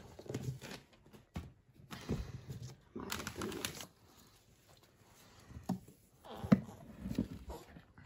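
Gift box being unwrapped: ribbon and wrapping paper rustling, then the lid lifted off and the tissue paper inside handled, in scattered short rustles and taps, the sharpest about six and a half seconds in.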